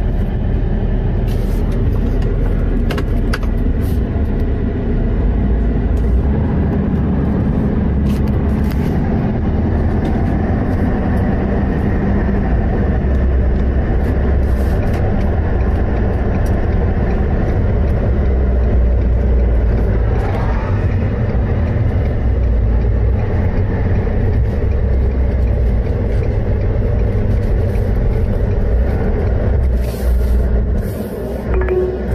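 Steady engine and road noise inside the cabin of a moving truck.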